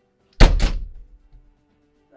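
A single loud, heavy thud about half a second in, dying away within about a second, over faint steady tones of background music.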